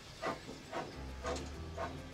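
Small saddle-tank steam locomotive running slowly into a station: a faint hiss of steam with soft strokes about twice a second, and a low rumble that comes in about halfway.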